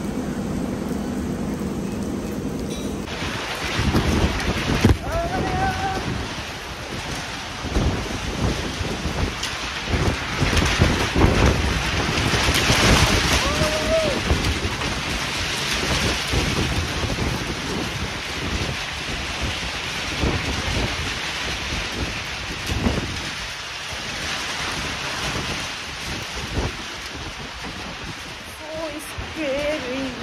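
Heavy rain with gusting wind buffeting the phone microphone, typhoon weather. It sets in abruptly about three seconds in and goes on in uneven, loud gusts.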